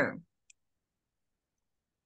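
A voice trails off at the start, then one short, faint click about half a second in, and otherwise silence.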